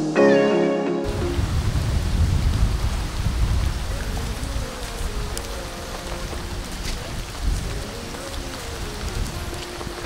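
Background music cuts off about a second in, then steady rain with gusty wind buffeting the microphone.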